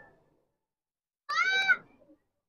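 Silence, then about a second and a quarter in a single brief high-pitched cry, about half a second long, rising slightly and then holding its pitch.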